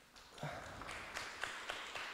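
Light scattered applause, individual hand claps audible, starting about half a second in.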